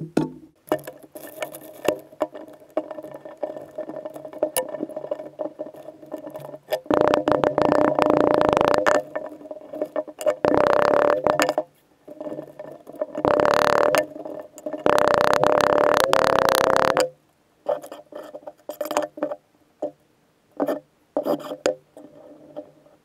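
Red casting sand poured and shaken from a plastic bag into a wooden flask over a pattern, in four long rushes through the middle, with short knocks and taps as the sand is worked in and packed down near the end.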